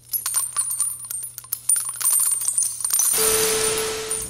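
Channel logo sting sound effect: a run of quick clicks and metallic jingles for about three seconds. It changes into a burst of TV-static hiss with a steady tone under it near the end.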